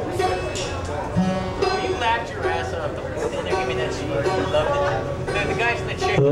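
Live rock band's guitars playing loosely, with voices heard over them.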